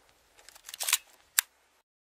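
Faint rustling and light clicks that grow a little around a second in, then one sharp click, before the sound cuts off.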